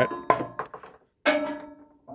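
Two chime-like ringing tones, each starting sharply and dying away within about a second, separated by an abrupt cut to silence.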